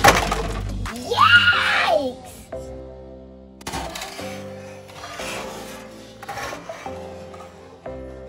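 A short loud clatter at the start and a rising-and-falling shout about a second in. After that, background music with steady held notes takes over.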